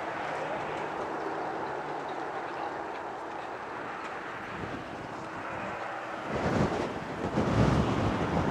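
Distant race boat's engine running at speed, a steady drone across the water. From about six seconds in, wind buffets the microphone and gets louder than the engine.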